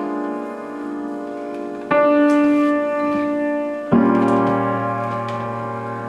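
Upright piano playing slow sustained chords: a new chord is struck about two seconds in and again about four seconds in, each left to ring and slowly fade.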